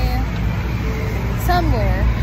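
Steady low rumble of city street traffic under a woman's speech.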